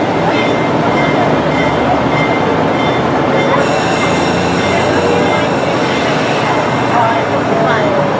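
Passenger train rolling slowly past a station platform: a steady rumble and rattle of the cars, with a brighter hiss coming in about halfway through. People chat nearby.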